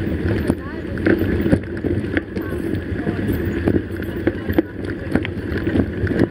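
Steady low road-and-wind rumble from a moving ride, with scattered knocks and rattles through it.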